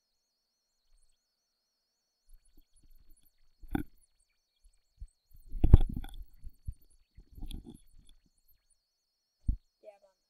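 A person's short, stifled laughs and breaths close to the microphone, in a few scattered bursts, the loudest about six seconds in.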